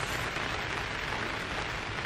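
Steady rain falling on the plastic cover of a polytunnel, heard from inside as an even hiss.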